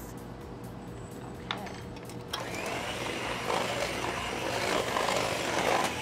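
Electric hand mixer starting up about two seconds in and running steadily, beating cheesecake batter of goat cheese and cream cheese in a steel bowl, growing a little louder as it goes. A light click comes just before it starts.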